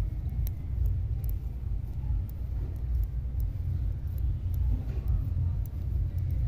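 Light clicking of metal knitting needles as stitches are knitted, a few faint clicks each second, over a louder, uneven low rumble.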